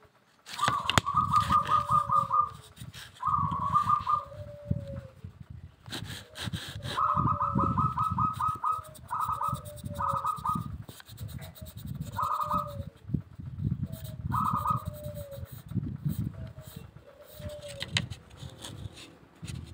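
Birds calling over and over: short, rapid trills alternating with lower, arching coo-like notes about once a second.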